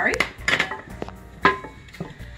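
Kitchenware clatter as cold butter chunks go into a metal saucepan: a knock about half a second in and a sharp, briefly ringing clink about a second and a half in, from the glass bowl and wooden spoon against the pan.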